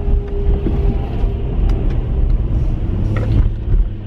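Road and engine rumble inside a moving car's cabin, a steady low drone, with a faint steady tone over the first couple of seconds.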